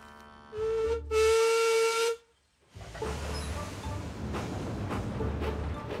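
Steam locomotive whistle sounding for departure: a short toot, then a louder blast of about a second that cuts off. After a brief silence comes the steady low rumble of the train getting under way.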